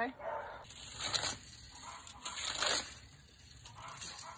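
A garden rake scraping through loose potting-mix soil in a few noisy strokes, raking scattered fertilizer in and levelling the bed.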